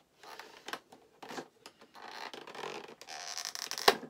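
Fingers scraping and prying at the cardboard of a small advent calendar door to free a stuck item: several bouts of scratching and rustling, ending in a sharp click near the end.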